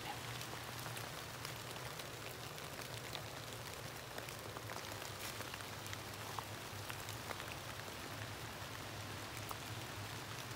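Rain pattering on leaves and the forest floor: a steady hiss dotted with many small, irregular drop ticks, over a faint low steady hum.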